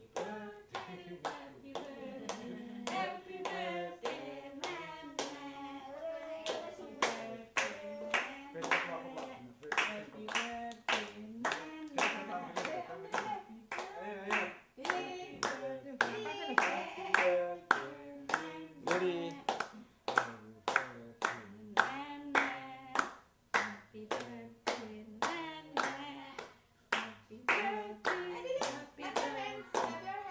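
A small group of people singing a birthday song together while clapping along in a steady beat, about two claps a second.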